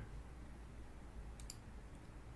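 Two faint, quick clicks close together about one and a half seconds in, over a low steady hum.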